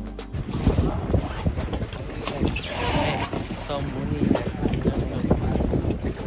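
Background music stops right at the start, then wind buffets the microphone in an irregular low rumble, with indistinct voices in the background.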